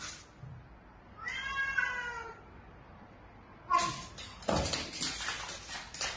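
A cat meowing: one drawn-out call about a second in, falling a little at the end. Near four seconds there is a short cry, then a stretch of loud, harsh, scratchy noise, the loudest part, as the cat and dog tussle.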